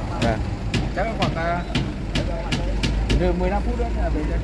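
Low steady rumble of a heavy truck's engine idling under people talking, with a scatter of sharp clicks.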